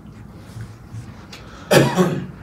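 Low steady room hum, then a single loud cough from a man close to a microphone near the end.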